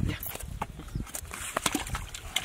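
Live fish dropped into a plastic bucket, thrashing and slapping against it. The sound is a quick, irregular run of sharp clicks and knocks.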